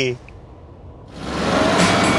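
A car driving off, its engine sound swelling up about a second in after a brief hush.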